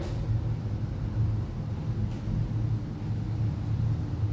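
A steady low rumble, with a faint tap about two seconds in.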